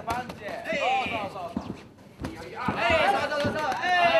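Men at ringside shouting during a kickboxing bout, in loud, high-pitched calls that break off briefly about halfway through, with a few sharp knocks among them.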